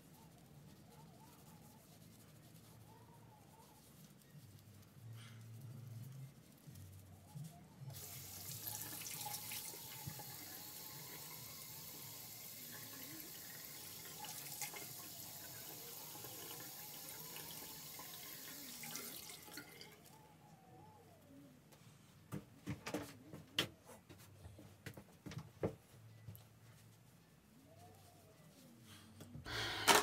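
Bathroom sink tap running steadily for about eleven seconds as the face is washed, then turned off, followed by several short sharp sounds.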